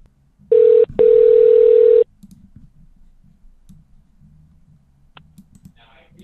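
A telephone line tone: a short beep, a brief break, then a steady tone held for about a second, followed by faint line noise with a few soft clicks.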